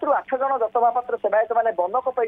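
A man speaking without a break over a phone line, the voice thin and cut off in the treble.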